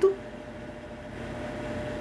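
Steady mechanical hum and hiss of background room noise with a faint constant tone, growing slightly louder over the two seconds.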